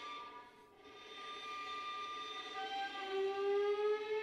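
Solo violin playing long sustained bowed notes, softly. A held high note fades briefly about half a second in and returns, and near three seconds a lower note joins and slides slowly upward.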